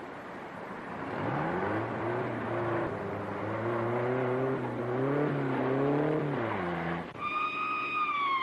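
Police motorcycle engine revving up and pulling away, its pitch rising and wavering as it accelerates. About seven seconds in the engine note drops away and a siren starts a steady high wail.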